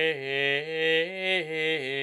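A single man's voice singing Gregorian chant unaccompanied, moving in small steps between sustained notes.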